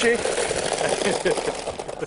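Countertop blender motor running steadily at speed, churning a frozen slush of strawberries, rosé and ice.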